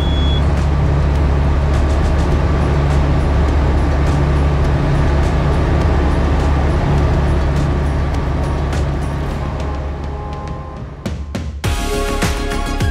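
Single-engine piston light aircraft (Tecnam) at full take-off power, heard inside the cockpit as a loud, steady engine and propeller drone during lift-off and the initial climb. The drone eases down near the end as music fades in.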